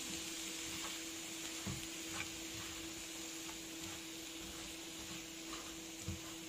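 Quiet room tone with a steady low hum and faint hiss, broken by a few faint, light clicks.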